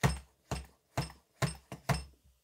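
Hand-held shock pump being stroked hard about twice a second, each stroke a short sharp push, filling a Fox shock's IFP chamber through a needle at around 450 psi, where it takes real force.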